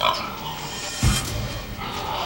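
Pig grunting in a barn pen, with a loud low thump about a second in.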